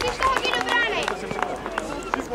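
Men's voices calling out across an outdoor football pitch, with several short sharp sounds among them.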